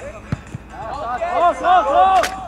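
A football kicked with a sharp thud about a third of a second in, then loud shouting from several voices that grows louder towards the end.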